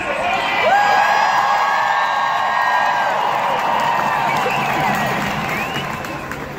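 Large crowd cheering and whooping, swelling up about a second in and dying down near the end.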